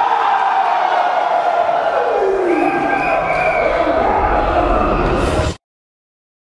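A crowd of spectators shouting and cheering, with one loud cry falling in pitch over the first two seconds or so. The sound cuts off suddenly about five and a half seconds in.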